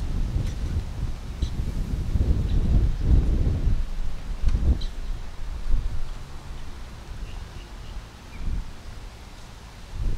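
Wind buffeting the microphone: a gusty low rumble, heaviest in the first half and easing after about six seconds.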